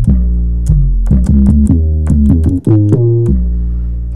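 An 808 bass one-shot sample played on GarageBand's sampler keyboard: about ten deep bass notes in quick succession at different pitches, each starting with a short click and ringing until the next. The sampler tunes the 808 automatically to the keys played.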